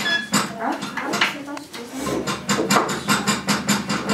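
Girls' voices chattering in a room, mixed with frequent small clicks and knocks from work at the table and looms.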